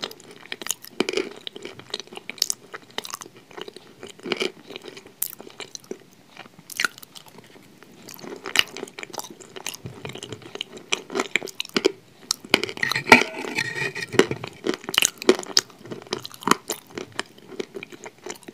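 A person chewing a mouthful of food right at the microphone: irregular wet clicks and crackles from the mouth, busiest and loudest about thirteen seconds in.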